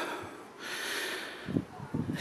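A person's breath close to the microphone, a soft, drawn-out exhale, followed near the end by a few faint low knocks.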